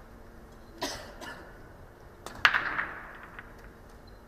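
Two short coughs in a quiet hall, the second louder than the first.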